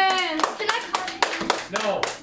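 Several people clapping by hand, loose and irregular, mixed with voices. A high, drawn-out child's voice trails off about half a second in.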